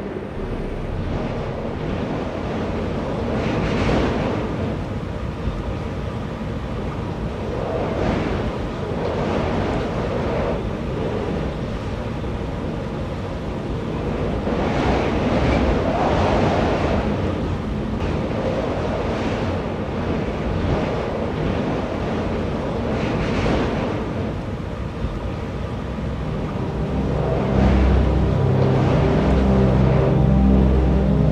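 Dust-storm wind blowing in gusts that swell and fade every few seconds, with heavy rumble from wind on the microphone. Low music tones come in near the end.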